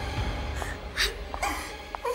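A woman sobbing in several short, broken whimpers.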